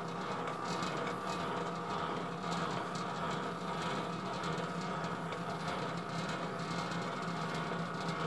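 Bowl-lift handwheel of a Hobart H600 mixer being cranked to raise the bowl, a run of small irregular clicks and scraping from the lift mechanism over a steady background hum.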